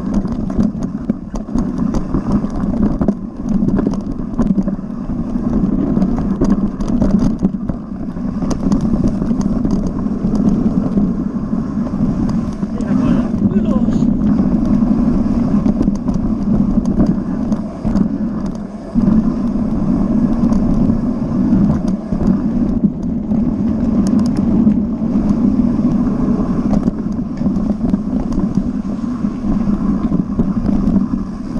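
Mountain bike descending a rough dirt trail at speed: a continuous rush of wind and tyre noise, with many knocks and rattles as the bike goes over roots and stones.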